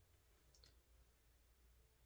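Near silence: room tone with a faint low hum and two faint clicks a little over half a second in.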